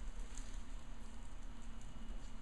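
Steady low room hum with faint rustling of a paper sheet being pressed and smoothed flat on a table.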